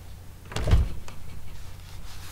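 A dull thump about half a second in, followed by a scatter of light clicks and rustling close to the microphone.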